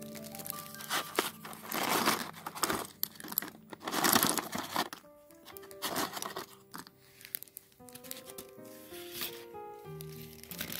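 A white paper envelope crinkling and rustling in several bursts, the loudest about two and four seconds in, as a pile of thin laser-cut wooden embellishments is shaken out of it, with light clicks of the wooden pieces tumbling out.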